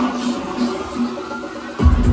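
Electronic dance music played loud on a club sound system. The bass and kick drop out for most of the stretch, leaving a thin upper mix, then come crashing back in near the end.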